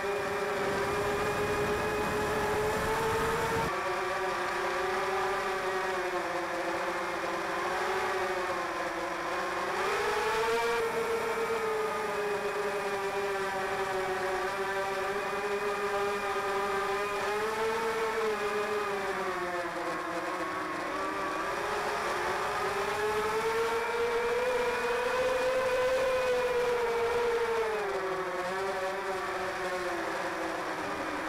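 Whine of a camera drone's electric motors and propellers heard from on board, steady but drifting up and down in pitch several times as the motor speed changes.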